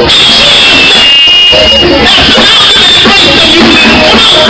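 Loud live gospel praise music from a church band, with voices over it.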